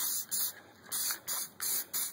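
Aerosol can of engine enamel spray paint spraying in short spurts, about six quick hisses in two seconds with brief gaps between.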